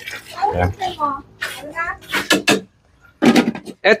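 Water poured from a metal bowl into a large aluminium pot of simmering stew, splashing into the liquid to top up the broth.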